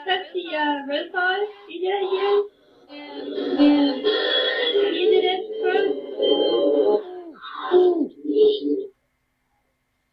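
Unintelligible voice-like sounds with no clear words, breaking off about nine seconds in.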